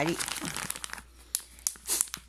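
A Shiba Inu licking its lips and nose after finishing a treat: small scattered wet clicks and smacks, starting about a second in, the loudest near the end.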